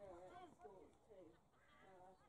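Faint, overlapping calls and shouts from players and onlookers.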